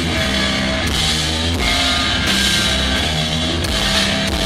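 Live rock band playing loud: electric guitars and bass over a drum kit, with repeated cymbal crashes.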